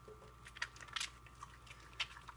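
Wet, soapy hands rubbing together to work up lather from a bar of 100% cold-process coconut oil soap: a faint, irregular wet squishing and crackling.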